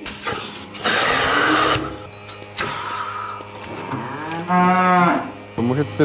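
A cow in a cow barn mooing once, a drawn-out call of about a second, about four and a half seconds in. A short burst of hiss comes about a second in.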